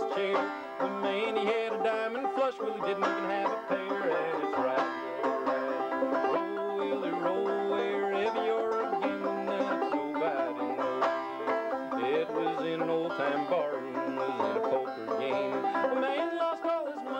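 Solo banjo picked steadily in an instrumental break between sung verses of an old-time ballad, with no singing.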